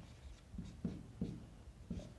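Marker pen writing on a whiteboard: a few short, faint strokes, one after another, as figures are written out.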